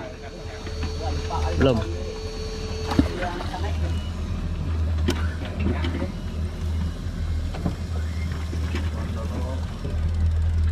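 Low rumble of wind on the microphone and the boat at sea, uneven in strength, with a steady whine that cuts off with a click about three seconds in.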